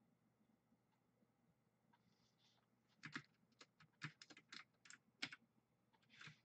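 Typing on a computer keyboard: after near silence, a quick run of about ten key clicks over two seconds starting about halfway in.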